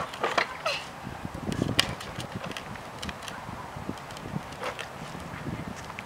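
Hard plastic wheels of a toddler's tricycle rolling over a concrete sidewalk: a low, uneven rumble with scattered clicks and knocks.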